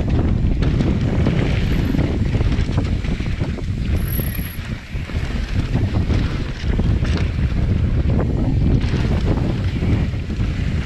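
Wind buffeting the GoPro's microphone as a mountain bike descends a dirt singletrack at speed, mixed with tyre noise and frequent small rattles and knocks from the bike over the rough ground. The rush eases briefly about halfway through.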